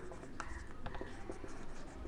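Marker pen writing on a whiteboard: faint, short strokes and small squeaks as letters are written.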